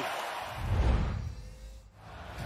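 Arena crowd noise fading out as a low boom from a broadcast graphic transition comes in about half a second in, dying away near the end.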